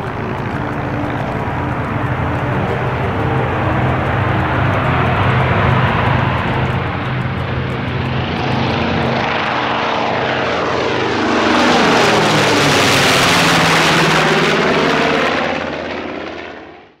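North American B-25J Mitchell's twin Wright R-2600 radial engines at takeoff power as the bomber climbs out, the propeller and engine sound growing louder and loudest as it passes overhead about eleven seconds in, then beginning to fade near the end.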